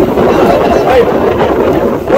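Men's voices calling out, over a steady low rumble of boat engine and wind on the microphone.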